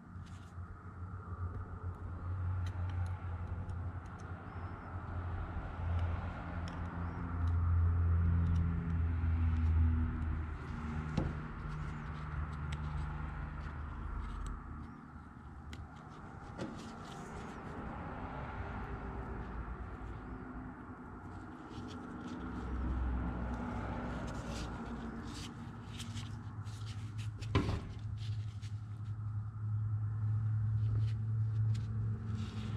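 A low motor or engine hum runs through, with steady tones that slowly shift in pitch and swell twice. Over it come light metallic clicks and taps from hand tools on a power steering control valve body, thickest near the end, with one sharp click.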